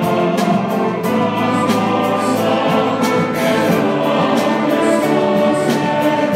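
A choir and orchestra performing live, with two vocal soloists, a man and a woman, singing over the ensemble. Violins and an accordion play in the orchestra.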